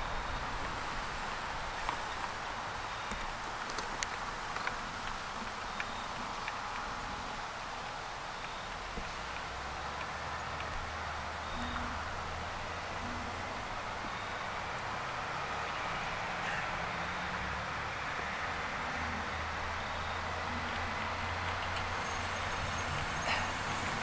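Steady outdoor background noise with a few faint clicks, and a low hum that comes in about nine seconds in.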